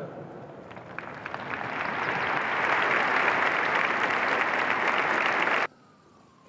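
Large crowd applauding, building over the first two seconds to steady clapping, then cut off abruptly near the end.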